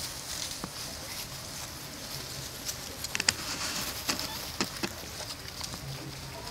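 Young macaques scuffling on grass, heard as scattered sharp clicks and taps, a cluster of them about halfway through, over a steady high hiss of outdoor background.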